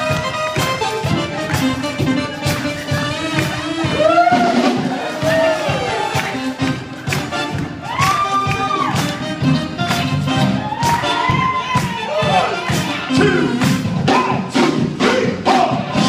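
Live rock band playing loudly, with a steady drum beat, electric guitars and organ and keyboards, and voices rising and falling over the music along with crowd cheering.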